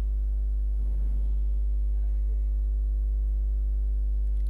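Steady low electrical mains hum, about 50 Hz with a row of overtones, running unbroken, with a faint brief noise about a second in.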